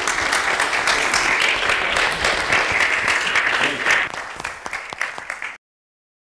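Audience applauding, a steady dense clapping that is cut off abruptly about five and a half seconds in.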